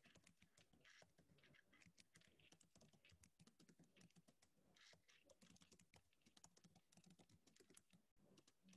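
Faint computer keyboard typing: quick, irregular key clicks throughout.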